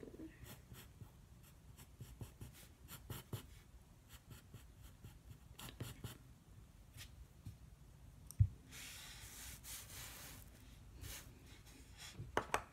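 Graphite pencil scratching on paper in many short strokes. About eight seconds in there is a single thump, followed by a couple of seconds of continuous scratching.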